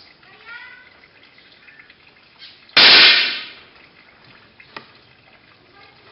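Air pistol fired once as the trigger breaks: a single sharp report about three seconds in, ringing briefly in the range hall.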